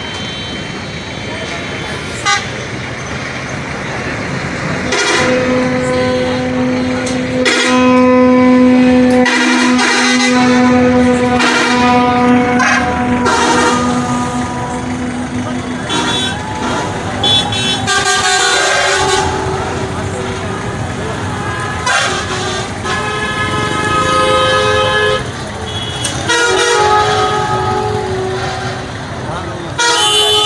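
Vehicle horns honking in a passing convoy of cars, vans and buses, over steady traffic noise. One horn is held for about twelve seconds, then several shorter horn blasts follow at different pitches.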